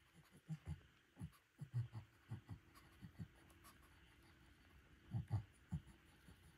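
Faint, irregular soft knocks and scuffs from paper food bowls being handled and set down.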